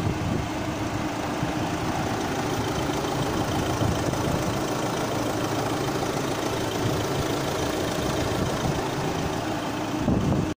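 Opel Movano van's 2.3-litre four-cylinder turbodiesel engine idling steadily, heard with the bonnet open.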